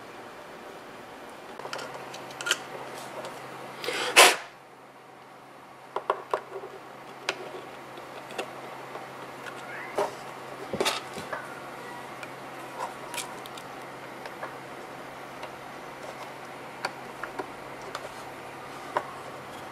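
Scattered light clicks and knocks of small plastic parts being handled on a workbench, with one brief, loud rush of noise about four seconds in. A faint low hum runs underneath from about two seconds in.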